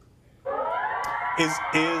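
A steady, many-toned sound like a held chord starts suddenly about half a second in and carries on, with a man's voice beginning to speak over it.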